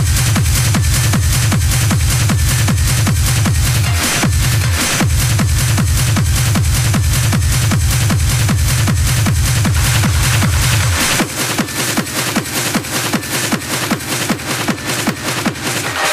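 Hard techno with a fast, driving kick drum. The low end drops out briefly about four seconds in. From about eleven seconds the bass and kick are cut away on the DJ mixer, leaving the upper percussion pulsing on its own.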